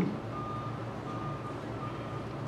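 A faint, single-pitched beep repeating about every three-quarters of a second over low room hum.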